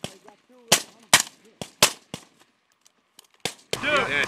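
Rifle fire: about six sharp shots at uneven spacing over roughly three seconds.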